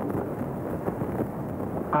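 A pause in a man's speech at a lectern microphone, filled only by a steady, fairly loud background noise of the hall.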